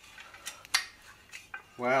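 Solid metal articulated microscope arm being handled and swung open: a few light metallic clicks and knocks from its joints and parts. A spoken 'wow' near the end is the loudest sound.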